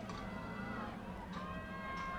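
Steady background noise of a stadium at a football game, with a few held tones coming in about a second and a half in.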